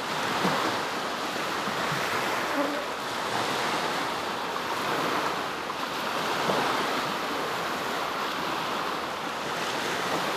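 Small Baltic Sea waves breaking and washing onto a sandy shore: a steady surf that swells and eases gently, with some wind.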